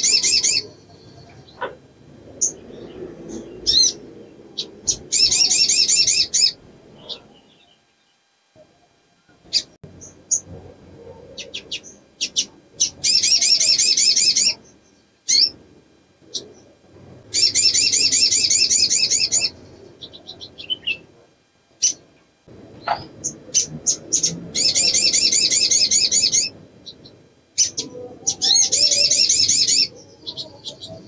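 Female olive-backed sunbird calling: bursts of rapid high trills, each about one and a half to two seconds long, repeated every few seconds, with short single chirps between them. This is the call of a female in breeding condition, used to draw males.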